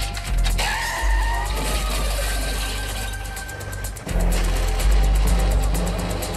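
Film car-chase soundtrack: dramatic music over car engine and tyre noise. A police Lada sedan skids on a wet road, its tyres hissing through spray.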